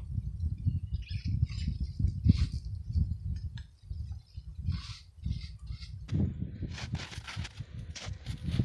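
Wind rumbling on the microphone, with short scraping swishes of a brush clearing a beehive's front entrance. About six seconds in the sound changes abruptly to a harsher hiss with crackles.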